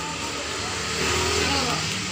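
Steady rumbling background noise with a low hum, growing a little louder about a second in, with faint voices behind it.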